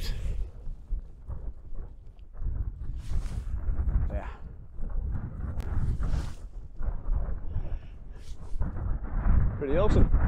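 Wind buffeting the camera microphone: a low, uneven rumble that swells and drops in gusts.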